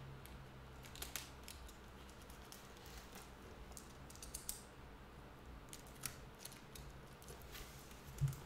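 Faint, scattered clicks and rustles of a package and its contents being handled and opened by hand, with a few sharper clicks among them, over a low steady hum.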